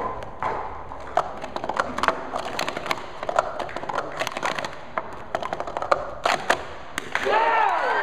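Plastic sport-stacking cups clicking and clacking in quick runs against each other and the mat during a cycle stack of about five and a half seconds. Near the end, shouting and cheering break out.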